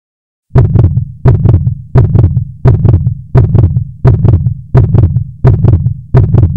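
Heartbeat sound effect: a steady lub-dub double beat, about 85 beats a minute, starting about half a second in.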